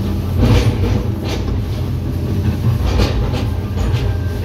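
Hitachi 210 excavator's diesel engine running under load, heard from inside the cab, with several knocks as the bucket chops into oil palm trunks.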